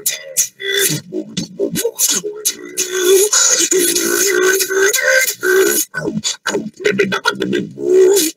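Human beatboxing: sharp vocal drum strikes, with a held, wavering vocal tone from about three seconds in to about six seconds in, then faster strikes again.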